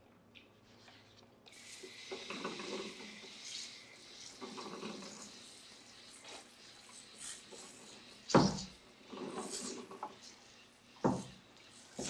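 Handheld sprayer spraying water onto an alloy wheel as a rinse: a steady hiss that starts about a second and a half in, with water splashing off the rim. Two sharp knocks stand out near the end.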